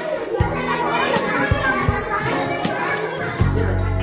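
Children chattering in a classroom under background music, with a steady bass line coming in near the end.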